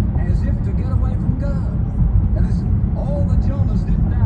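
Steady low rumble of road and engine noise from a car driving at city speed, with a man's voice faintly over it.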